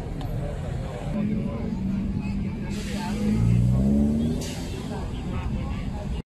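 A city bus accelerating along the avenue, its engine note rising in steps and loudest about three to four seconds in, over a steady low traffic rumble and people talking.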